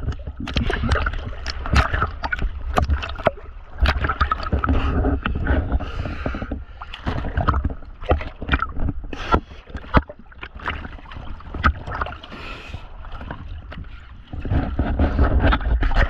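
Water splashing and sloshing against a boat hull at the waterline as it is scrubbed by hand with a scrub pad, in a run of irregular sharp splashes over a low rumble of moving water, heard right at the water surface.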